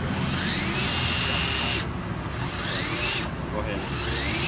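TorcUP Volta battery torque wrench running to loosen a GE traction motor gear case bolt, without being turned up to full setting. Its motor whines up in pitch and holds steady, cuts out about two seconds in, runs again briefly, and starts up a third time near the end.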